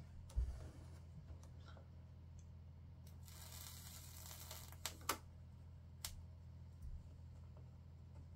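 Quiet soldering on N-gauge model railway rails: a soldering iron held against the rail joint, with a brief hiss about three seconds in and a few small clicks and taps of the iron and hands on the track, over a steady low hum.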